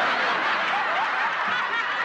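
Studio audience laughing together at a punchline, a steady wave of laughter.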